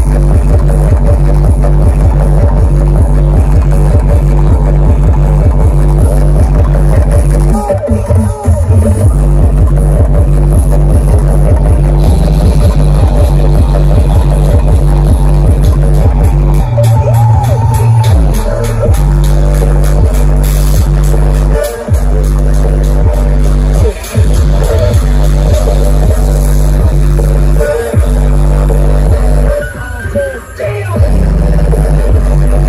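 Very loud electronic DJ dance music played through giant stacked outdoor sound systems, with heavy deep bass pulsing steadily. The music breaks off briefly a few times.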